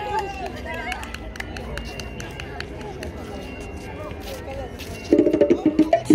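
People talking over a quieter stretch with scattered light clicks, in a pause between bachata songs. About five seconds in, loud music starts again.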